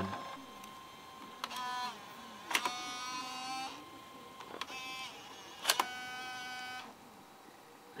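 LS-240 SuperDisk drives in a ThinkPad A31 at work. Sharp clicks come a few times, and three of them are each followed by a short, steady, even-pitched motor whirr; two of the whirrs last about a second.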